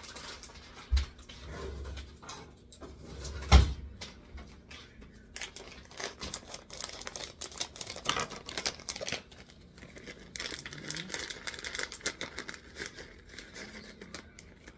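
Plastic bag of shredded cheese crinkling and rustling as it is handled and opened, with scattered small clicks. A low thump about a second in and a sharper, louder thump about three and a half seconds in.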